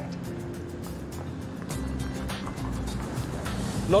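Background music over a box van driving, its engine a low rumble that grows louder about halfway through.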